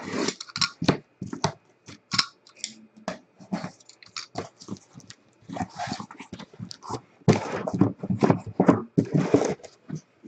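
A cardboard case being opened: a box cutter run along the packing tape, then the flaps pulled back with cardboard scraping and rustling. The sounds come in irregular bursts and are busiest for a couple of seconds near the end.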